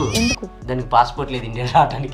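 Short vocal sounds over steady background music.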